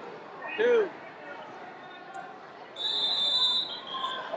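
Electronic end-of-period buzzer on the wrestling mat's timer: one steady, high-pitched tone lasting about a second, sounding about three seconds in as the first period runs out. A short shout comes about half a second in.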